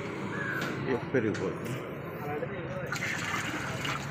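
Faint voices of people talking in the background over a steady outdoor hiss.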